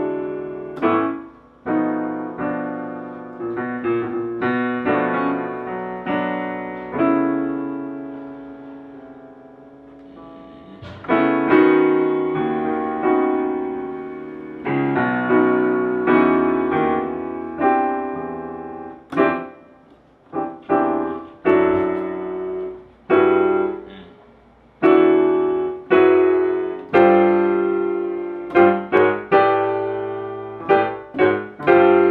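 Digital piano played solo in chords. One chord is left to die away about a third of the way in, then louder playing follows, with short, quick stabbed chords near the end.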